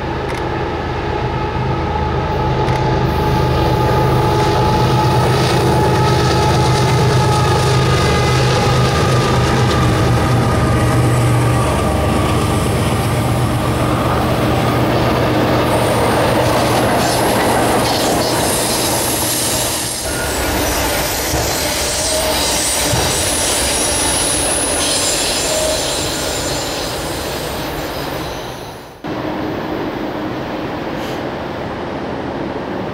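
A diesel-hauled freight train passing close: the locomotives' engines drone for the first dozen seconds, then a long string of autorack cars rolls by with steady wheel rumble and high-pitched wheel squeal on the curve. The sound breaks off suddenly near the end.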